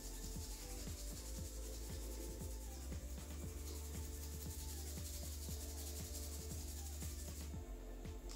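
Hands rubbing the ears in faint, quickly repeated strokes, over soft background music.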